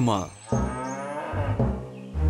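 A cow mooing once, one long call lasting over a second.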